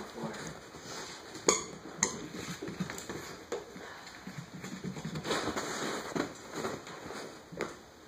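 A corgi puppy's claws clicking and pattering on a hardwood floor as it scampers after a toy, with a few sharp knocks, the loudest about a second and a half in.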